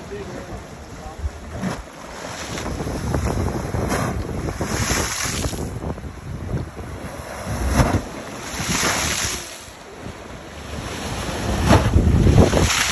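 Sea waves surging against a rocky shore and forcing water up through a blowhole in the rock, the rush of water and spray swelling and fading every few seconds, loudest near the end.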